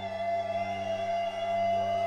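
Live rock band music: long sustained notes held over a steady low drone.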